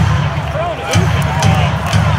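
Basketball bounced on the hardwood court several times, about every half second: a free-throw shooter dribbling before the shot. Arena crowd noise and low, pulsing arena music are underneath.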